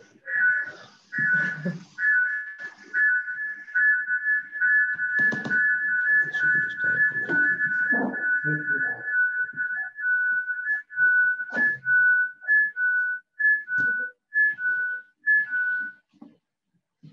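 A steady, high whistle-like tone of two close pitches held together for about ten seconds, which then breaks into short alternating notes, with scattered sharp knocks and thuds underneath.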